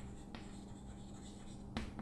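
Chalk writing on a green chalkboard: faint scratching with a couple of light taps as letters are written.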